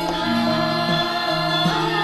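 Javanese gamelan music accompanied by singing voices: sustained pitched tones with wavering vocal lines.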